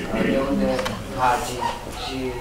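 Speech: a woman talking, her voice rising and falling in pitch.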